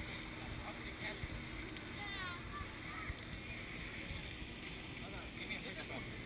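Steady low rumble and wind noise on the open deck of a moving cruise ship, with faint voices in the background.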